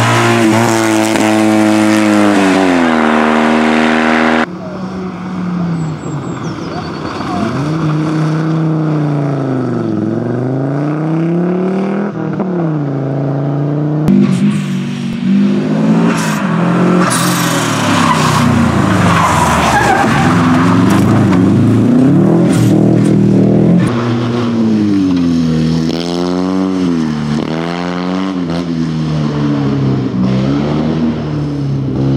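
Rally cars' engines revving hard and dropping back through gear changes as they drive a stage, one car after another with abrupt cuts between them: a Fiat 126p's air-cooled two-cylinder, then a Subaru Impreza, then another Fiat 126p.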